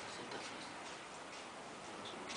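Faint, irregular clicks and ticks over a steady background hiss.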